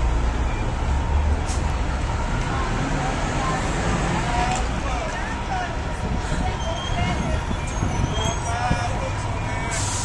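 City street traffic noise, with a vehicle engine running low and heavy, loudest in the first couple of seconds. Faint voices of people on the sidewalk come through in the background.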